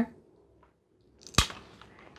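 Wheeled glass nipper snapping a corner off a square of mosaic glass: one sharp crack about one and a half seconds in.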